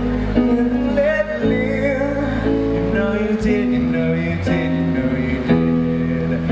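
Live band music: held chords with a wavering melody line over them, playing steadily throughout.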